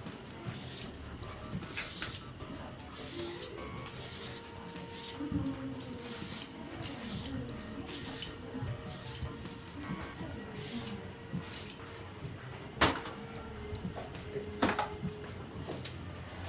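Aerosol can of hair styling spray sprayed in a long series of short hissing bursts, roughly one every half to one second, stopping about twelve seconds in; two sharp clicks follow near the end.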